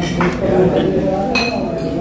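Diners talking over a meal, with tableware clinking and one ringing clink about one and a half seconds in.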